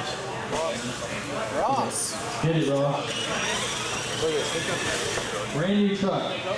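Indistinct voices of people talking in a large hall. Through the middle, a faint high whine rises and then falls: the electric motor of a radio-controlled monster truck revving.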